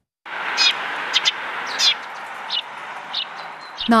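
Eurasian tree sparrows chirping: about six short, high chirps, spaced half a second to a second apart, over steady outdoor background noise.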